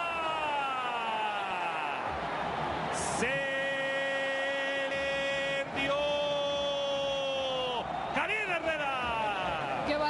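A man's long drawn-out shout that falls slowly in pitch, followed by two long held notes. It comes on a Chivas left-footed shot that just misses.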